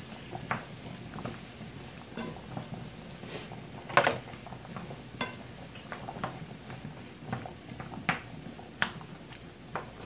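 Wooden spoon stirring sliced onions and mushrooms in a frying skillet, with irregular light taps and scrapes against the pan, the loudest knock about four seconds in.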